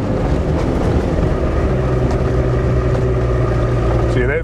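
A vehicle's engine running steadily while driving, with tyre and road noise, heard from inside the cab as one even hum.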